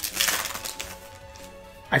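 Foil wrapper of a Yu-Gi-Oh booster pack crinkling as it is torn open, loudest in the first half-second and then fading. Faint background music with held notes runs underneath.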